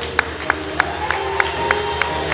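Live song performance: a sharp, steady beat about three times a second under long held notes, just as the singer's wavering sustained note ends.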